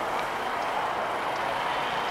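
Steady city street noise, an even hum of passing traffic and the street with no single event standing out.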